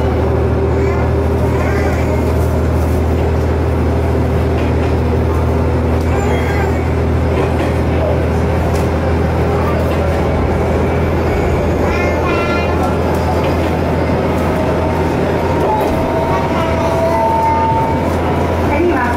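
Kanto Railway Joso Line diesel railcar running, heard from inside the car: a steady low engine drone with wheel and rail noise. Near the end a level-crossing bell rings as the train passes the crossing.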